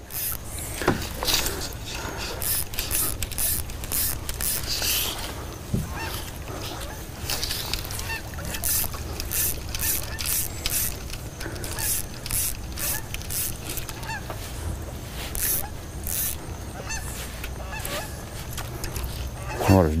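Geese honking repeatedly in short, irregular calls, over a steady low rumble.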